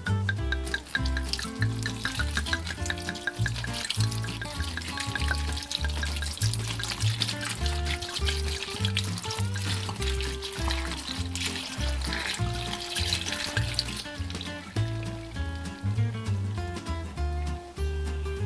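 Red wine being poured into a pot of sliced citrus fruit and cinnamon, a splashing pour over background music with a steady bass line; the pour stops about three-quarters of the way through.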